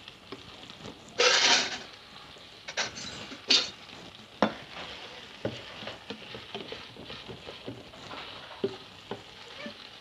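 Packaging being handled and opened: crinkling plastic with scattered sharp clicks and snaps. There is one louder rustling burst about a second in.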